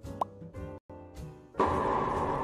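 A short rising pop sound effect about a fifth of a second in, over soft background music. The music drops out for an instant, then louder outro music comes in about a second and a half in.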